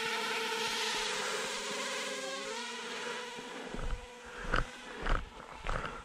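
DJI Ryze Tello mini drone's propellers buzzing in a steady high whine just after a hand launch, the pitch wavering briefly about two seconds in and fading as it flies off a little over three seconds in. Then several footsteps follow, about one every half second or so.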